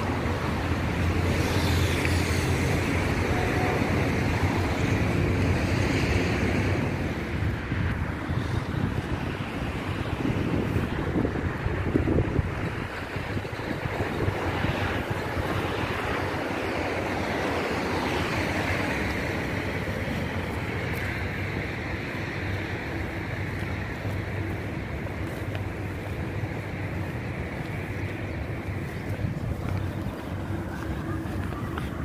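Wind rushing over a handheld phone's microphone, a steady noise with slow swells, mixed with road traffic going by.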